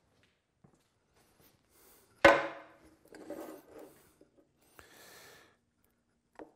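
A sharp knock as a small pot is set down on a coal stove's top, followed by scraping and rubbing as a stick stirs the petroleum jelly in the pot.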